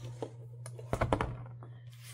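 Light clicks and taps from handling a cross-stitch project and its project folder, a few scattered and then a quick cluster about a second in, over a steady low hum.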